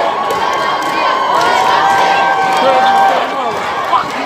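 Crowd of marchers cheering and shouting, with a long held whoop in the middle.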